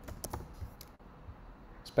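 Computer keyboard keystrokes, a few quick taps in the first second, then a single mouse click near the end.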